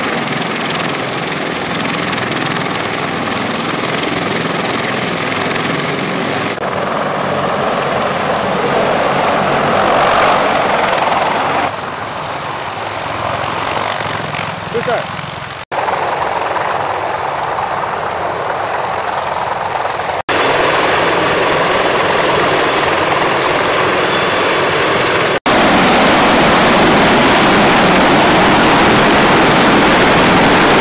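Heavy-lift CH-53 helicopter running on the ground, its rotor and turbine noise dense and steady, changing abruptly in level and tone several times.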